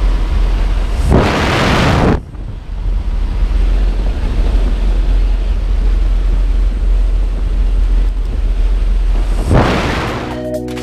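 Jump plane in flight with its side door open: a steady low engine drone under rushing wind noise on the microphone. Loud blasts of wind come about a second in and again near the end, and the wind noise drops suddenly just after two seconds.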